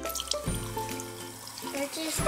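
A faucet running a thin stream into a sink and over hands lathering bars of soap, heard under background music.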